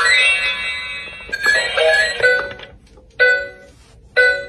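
Electronic chimes from a battery-powered whack-a-mole toy: a rising run of notes as its button is pressed, a few short beeping notes, then a brief burst of tones about three seconds in.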